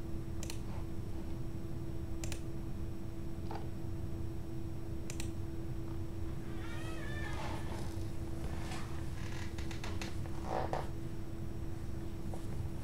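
Open-microphone room noise: a steady low hum with a few scattered sharp clicks, and a brief wavering high-pitched sound about seven seconds in.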